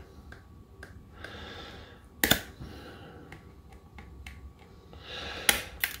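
A plastic CD being worked at its edge to split its two layers: faint scraping and small clicks, with one sharp click about two seconds in.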